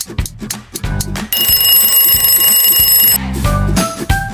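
Background music with a steady beat. About a second in, an alarm clock sound effect rings loudly for about two seconds, a fast rattling bell, marking that the time to answer is up.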